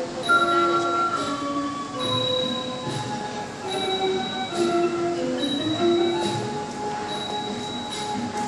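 Thai classical ensemble music: a melody of long held notes stepping and gliding between pitches, over small hand cymbals ringing at an even beat about once every one and a half seconds.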